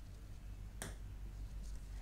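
A single sharp tap a little under a second in, a stylus pen striking the glass of an interactive whiteboard, over a faint low room hum.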